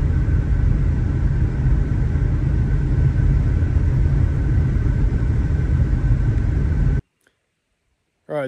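Car driving on a sealed road, heard from inside the cabin: a steady low rumble of tyres and engine. It cuts off suddenly about seven seconds in.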